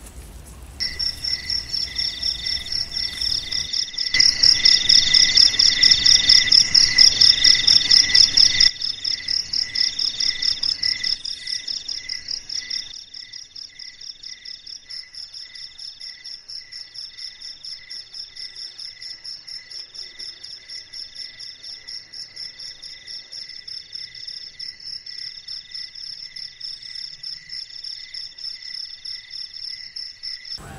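Night insects chirping in fast, even pulses, several at once at different pitches, with one higher trill coming in bursts of about a second. They are loudest for a few seconds early on, over a rough rustling noise, then settle to a steady chorus.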